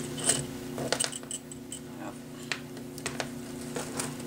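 Light metallic clicks and rattles, scattered and irregular, from a spool of 26-gauge copper craft wire being handled and unwound, over a steady low hum.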